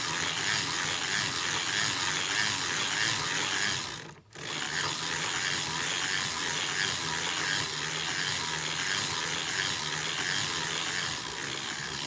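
Hand-cranked circular sock machine knitting: a steady mechanical clatter of the needles and cam parts as the cylinder is turned round, row after row. The sound breaks off briefly about four seconds in, then carries on.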